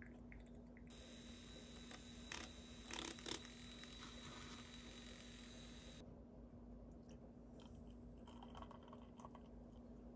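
Very quiet kitchen handling sounds: a few soft clicks and taps, then, near the end, faint trickling as milk is poured from a small glass jug into a ceramic mug, over a low steady hum.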